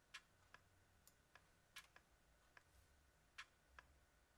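Near silence broken by about nine faint, irregular clicks from a computer mouse and keyboard in use.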